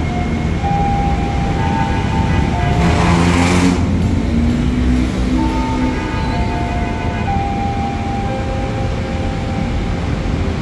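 JR 205 series electric commuter train starting to pull out, its traction motors giving whining tones that step in pitch over a low rumble, with a short burst of hiss about three seconds in.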